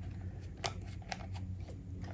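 Small flat-head screwdriver working short steel screws loose from a Singer 301's plug receptacle: a few light metal clicks and scrapes.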